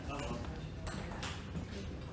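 Table tennis ball clicking off paddles and table, two sharp clicks a little after a second in, with faint voices in the background.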